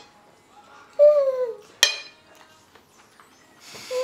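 A man's closed-mouth "mmm" of enjoyment while eating, falling in pitch, about a second in, then a single sharp clink of cutlery. Another short "mmm" comes near the end.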